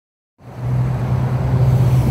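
A car engine idling with a steady low hum, coming in about half a second in.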